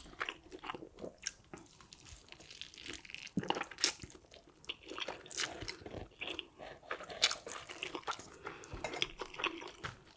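Close-miked eating of saucy spicy fire noodles: wet chewing and mouth smacks, with many short sharp clicks scattered irregularly throughout.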